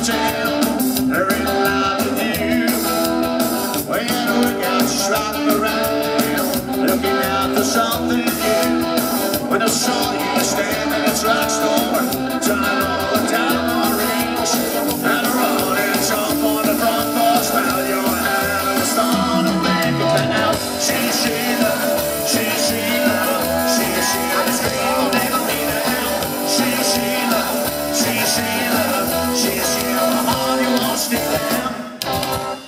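Live psychobilly band playing loud and steady: slapped upright bass, drum kit and electric guitar driving a fast steady beat.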